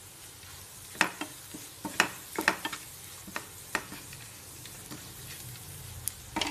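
Spatula scraping and tapping against a nonstick frying pan as onions and green chillies are stirred while frying in oil, a faint sizzle underneath. The strokes come in a quick run from about a second in until nearly four seconds, with the sizzle alone after that.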